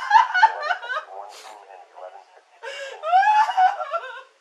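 A woman crying and wailing in distress, with high-pitched cries that rise sharply in pitch. There are two loud bouts, one at the start and one near the end, with quieter sobbing between them.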